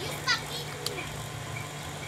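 A distant child's brief high-pitched shout, then a single small sharp click as a USB plug is pushed into a drone battery charger, over a steady low hum.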